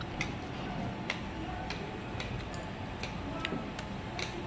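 Light, irregular clicks, about three a second, from a simmering tabletop hot pot and the utensils around it, over a steady low background noise.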